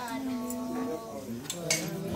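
Stainless steel plates and bowls clinking as they are handled, with a few sharp clinks about halfway and near the end, over group devotional singing.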